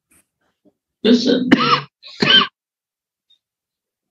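A short burst of laughter from one person, about a second in, followed by a brief "ah".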